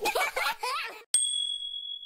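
A short burst of high cartoon voices, then a single bright chime ding a little past halfway that rings steadily for about a second: the title-card sting for the next song.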